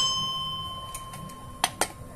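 Aluminium pressure cooker ringing once as its lid goes on, the ring fading over about a second and a half, then two light clicks as the lid is closed.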